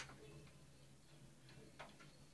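Near silence broken by two short clicks: a sharper one right at the start and a fainter one near the end.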